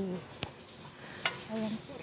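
A sharp click about half a second in, then a fainter click just after a second, in a quiet room tone; a woman says a short word near the end.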